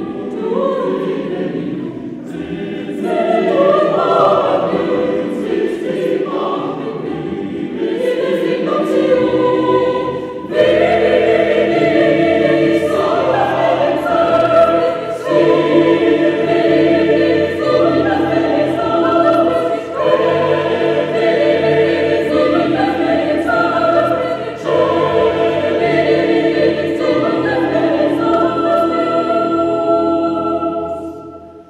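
Mixed chamber choir singing unaccompanied, held chords moving in phrases with brief breaths between them. A fuller, louder entry comes about ten seconds in.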